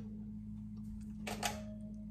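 Quiet kitchen with a steady low hum, and one short light clink about a second and a half in as a metal mesh strainer is set down on a glass saucepan.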